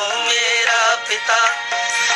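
A song on the soundtrack: a singing voice holding wavering, ornamented notes over music.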